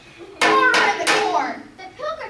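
A person's voice close to the microphone, much louder than the actors, in three quick pulses over about a second.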